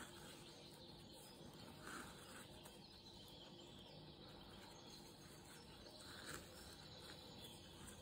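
Near silence: room tone, with a couple of faint, brief soft sounds about two seconds and six seconds in.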